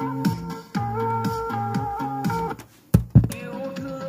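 Music with guitar played from a cassette through a Sony CFS-715S boombox's speaker. About two and a half seconds in the music breaks off, followed by two loud thumps, and it then resumes more quietly.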